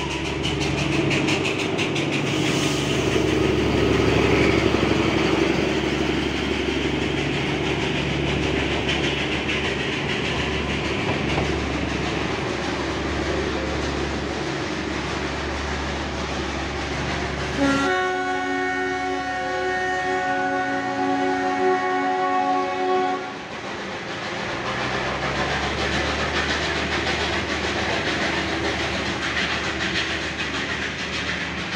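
Narrow-gauge Darjeeling Himalayan Railway diesel locomotive running steadily as it hauls its coaches past. About eighteen seconds in, one long horn blast sounds for about five seconds, then the running sound carries on.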